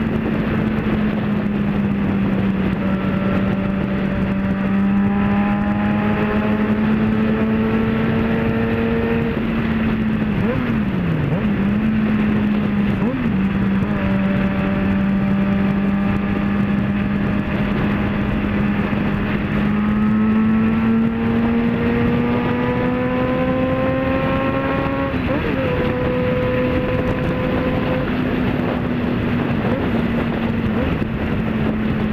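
Motorcycle engine running steadily at highway cruising speed over wind rush. Its pitch dips briefly twice around the middle, climbs slowly later and eases back near the end.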